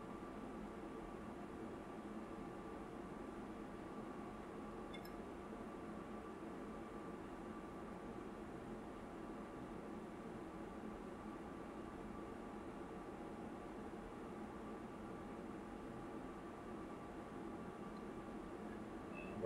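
Steady faint hiss with a low hum and a thin, faint tone: background room noise, with one faint tick about five seconds in.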